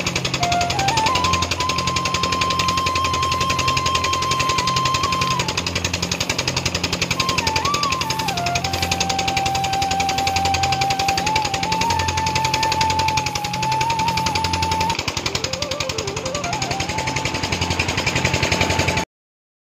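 Background music: a single melody line moving in steps over a rhythmic bass beat, with a dense, rapid pulse under it.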